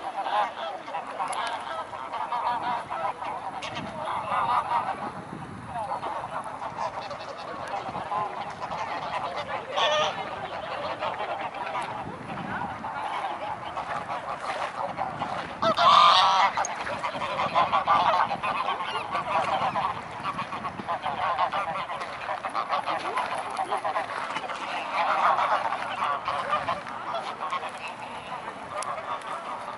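A flock of greylag geese honking and cackling without a break, many calls overlapping. It swells into louder outbursts a little past halfway and again near the end.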